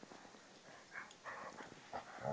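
Faint breathy huffs and snuffling from two dogs, a vizsla and a pointer, mouthing each other in play, with a few short puffs from about a second in.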